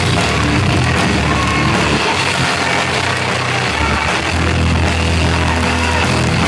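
Loud live industrial metal band playing, drum kit and distorted guitars. The heavy low end drops out for about two seconds in the middle, then comes back in.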